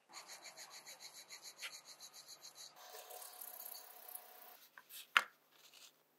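Fast back-and-forth rubbing, about six strokes a second, as excess material is worked off the surface of a porcelain watch dial. It goes over to a steadier, smoother rub, and a single sharp click comes near the end.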